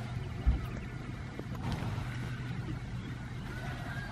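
A steady low outdoor rumble, with one short, loud low thump about half a second in.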